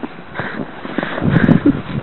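Footsteps and scuffling in snow, irregular and louder in the second half.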